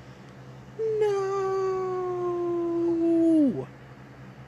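One long held cry, about three seconds, slowly sinking in pitch and then dropping away sharply at the end.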